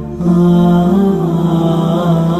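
A single voice chanting melodically in long held notes that bend slowly up and down in pitch. The chant comes in just after a brief dip at the very start.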